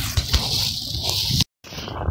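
Rustling handling noise and wind on a phone's microphone as it is lowered, broken by a short dropout at an edit about one and a half seconds in.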